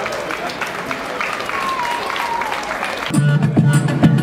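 Audience applause and voices, with a short falling whistled glide. About three seconds in, the band comes in loudly on its upcycled instruments: deep bass notes under sharp percussion strokes.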